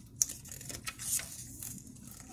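Paper handling as a hardcover picture book's page is turned: a sharp click near the start, then soft rustles and a brief swish about a second in.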